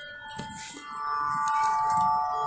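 Electronic tanpura box sounding a steady, shimmering drone of several sustained tones, growing louder about a second in as it is turned up.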